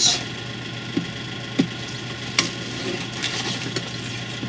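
Plastic headlight housing being pulled apart by hand along its heat-softened Permaseal seam: a light crackling with a few faint clicks, over a steady low hum.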